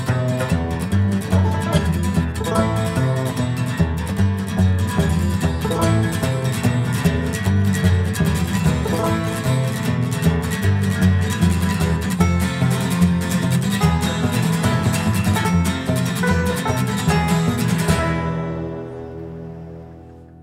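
Instrumental break of a bluegrass string-band song: fast-picked banjo and guitar over a steady low bass line. The music fades down over the last two seconds.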